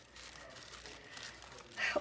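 Faint rustling and crinkling of thin tissue and printed papers as hands sort through a stack of them.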